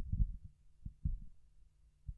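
Handling noise on a wired handheld microphone: a few soft, irregular low thuds as the hands shift around the mic body, over a faint low hum.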